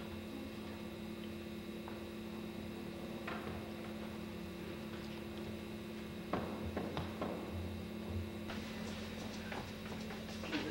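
Steady electrical hum with a few faint knocks and clicks, busier near the end.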